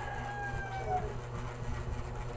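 A rooster crowing: one long call that falls slightly in pitch and ends about a second in.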